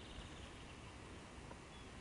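Faint outdoor ambience: a steady hiss and low rumble, with a short rapid run of high chirps at the start and a couple of brief high chirps later, from birds or insects.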